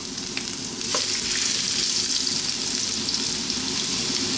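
Julienned ginger sizzling in a thin layer of hot sunflower oil in a wok on high heat, a steady frying hiss that swells about a second in. A couple of small clicks sound near the start.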